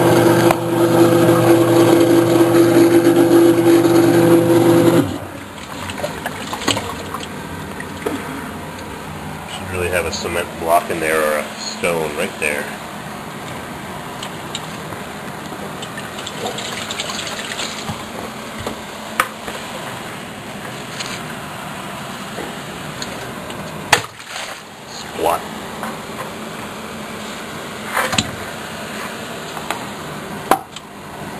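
A steady mechanical hum that cuts off suddenly about five seconds in. Quieter scraping and handling noises follow, with a few sharp knocks near the end.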